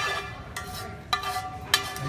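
Metal tongs clinking against cookware three times while serving noodles: once at the start (the loudest), about a second in, and near the end, each clink leaving a short ringing tone.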